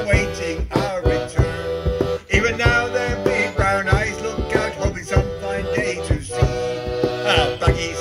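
Folk group playing a sea shanty: men singing over a bodhrán beaten in a steady rhythm with a tipper, with an accordion.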